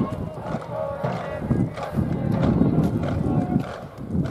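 Wind buffeting the microphone in uneven low rumbles, with voices calling out faintly beneath it.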